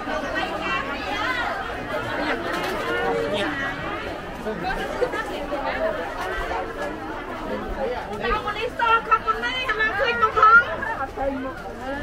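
Crowd chatter: many people talking at once. From about two-thirds of the way in, nearer voices stand out louder.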